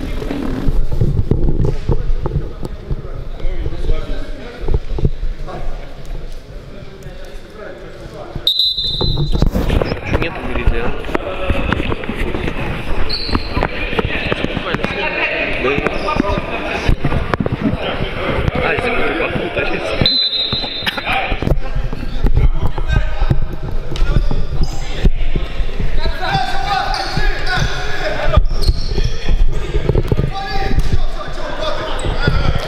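A futsal ball thudding and bouncing on the wooden floor of a sports hall, echoing, with players' voices calling out over it.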